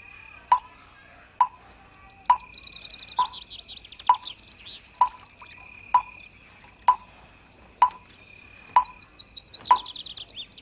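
Evenly spaced drip-like plops, a little faster than one a second, over a steady thin high tone, with two runs of rapid high chirping, the first about two seconds in and the second near the end.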